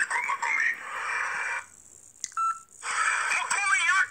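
A man's voice talking on a mobile phone, broken about two seconds in by a short pause with a click and a brief electronic beep of about half a second, then talking resumes.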